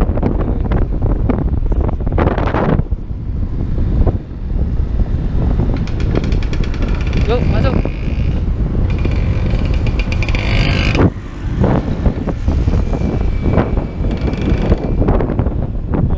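Wind buffeting the microphone of a camera on a moving scooter: a heavy low rumble mixed with road and engine noise, dipping briefly twice.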